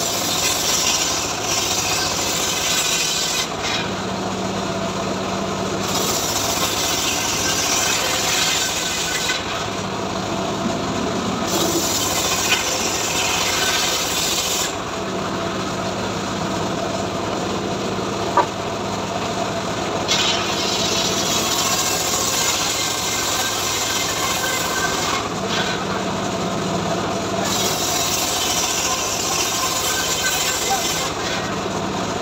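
Homemade circular saw bench ripping mahogany: the blade's cutting noise comes and goes in about five passes of a few seconds each, over the steady hum of the motor driving it.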